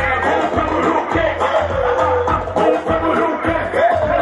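Loud music through a concert PA: a bass-heavy beat with a voice singing a wavering melody over it.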